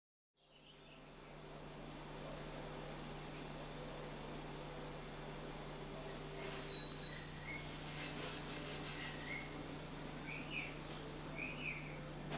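Faint steady low hum over a background hiss, fading in from silence at the start; birds chirp several times in the second half.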